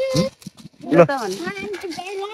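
Young girls' voices talking, with a brief pause about half a second in.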